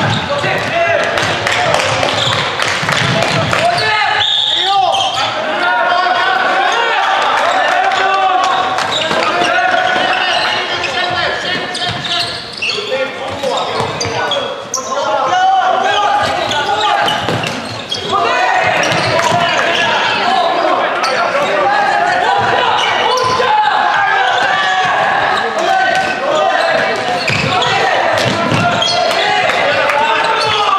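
Floorball play in an echoing sports hall: players shouting and calling to each other, with frequent sharp clacks of sticks hitting the plastic ball and the floor.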